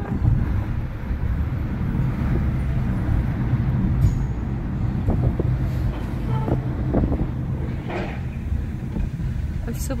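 Steady low rumble of engine and road noise inside a moving Fiat taxi's cabin.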